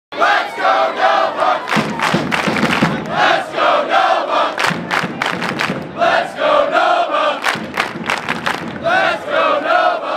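A large crowd chanting loudly in unison, phrase after phrase, with sharp hits between the phrases.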